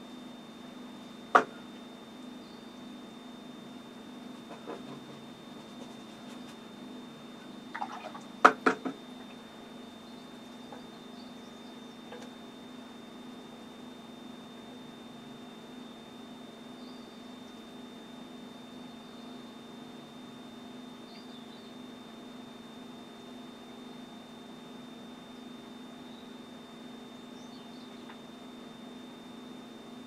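Steady electrical hum with a thin high whine in a small room, broken by one sharp click about a second and a half in and a quick cluster of clicks around eight seconds in.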